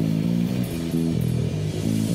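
Music: a low-register guitar riff, a short phrase of notes played over and over.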